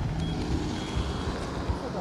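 Low rumbling roadside noise: a stopped car's engine running, with wind buffeting the microphone, under faint voices.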